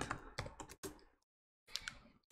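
Computer keyboard typing: a few faint, separate keystrokes about half a second to a second in, then a short cluster of keystrokes near the end as a word is typed and the entry is finished.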